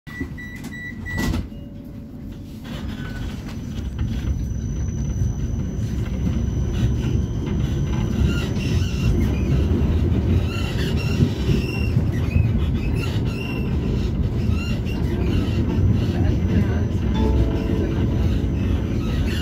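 Interior of a Vienna tram running along street track: a low rumble of wheels and running gear grows louder over the first few seconds as the tram picks up speed, then holds steady. At the start there are a few short electronic beeps and a clunk. Near the end a pitched chime sounds.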